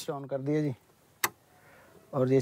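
A single sharp click from the switch on an electric groundwater pump's starter panel being pressed, with a faint hiss after it.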